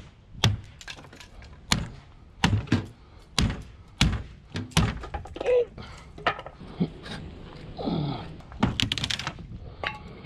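A hatchet chopping into rotted teak slats, a run of sharp chops about every half second to second with wood breaking off, then a quick cluster of strikes near the end. The wood gives easily because it is rotted.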